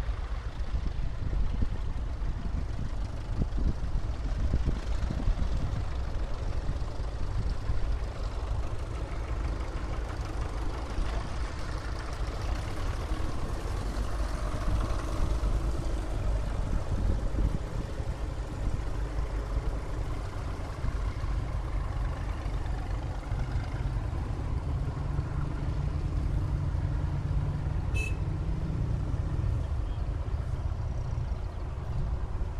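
A convoy of vintage tractors driving past one after another, their engines running steadily with a low rumble that grows a little stronger near the end as the nearest tractor comes closer. A short high chirp near the end.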